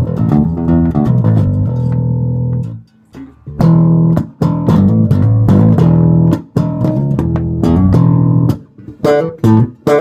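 Status bass guitar with a graphite neck, plucked with the fingers and played through an Ashdown bass combo amp: a line of held notes, a short break about three seconds in, then more notes ending in short, clipped ones.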